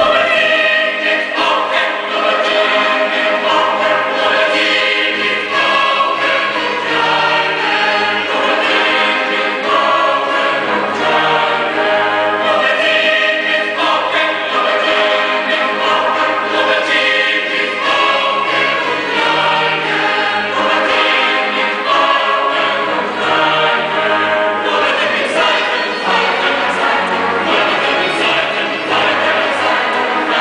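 Large mixed choir singing a baroque psalm setting with string accompaniment, entering loudly all at once after a quiet moment and carrying on in full, sustained chords.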